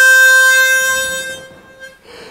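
A chromatic harmonica holds one long reedy note that fades away near the end.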